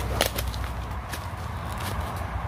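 Footsteps through woodland undergrowth, with several sharp snaps and swishes of twigs and brush against the walker, over a low steady rumble.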